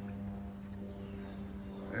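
A steady low hum that holds one pitch throughout.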